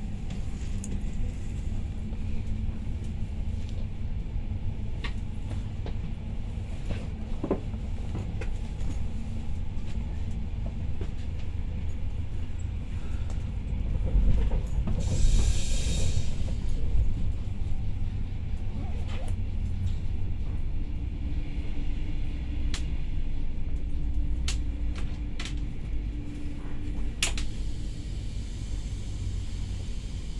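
Pesa SunDeck double-deck coach running along the track, heard from inside on the lower deck: a steady low rumble from the wheels and running gear, with scattered sharp clicks. A brief loud hiss comes about halfway through.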